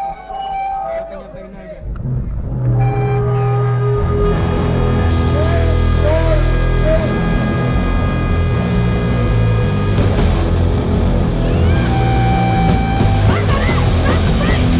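Live raw punk band: a voice for the first couple of seconds, then the band comes in loud with distorted electric guitar, bass and drums, filling out a couple of seconds later and playing on hard.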